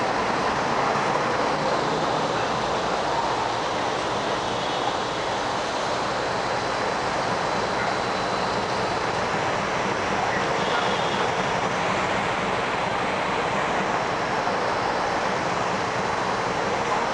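Steady, even street noise of city traffic, with no distinct events standing out.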